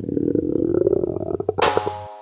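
Stomach-rumble sound effect for a sick toy dog: a long low gurgling growl with a fast pulsing texture, ending near the end in a short bright hiss with a ringing tone that cuts off sharply.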